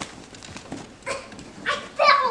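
Mini Whoodle puppy giving a few short, high yips a fraction of a second apart.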